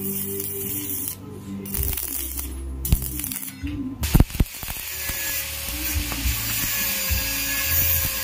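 Stick (electrode) arc welding on sheet steel, a crackling hiss from the arc that breaks off briefly a few times in the first half and then runs steadily from about four seconds in. Music plays underneath.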